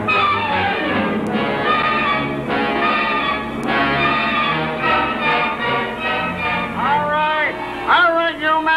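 Orchestral title music with brass, a dense band of sustained notes at a steady level. Near the end a single swooping note rises and falls.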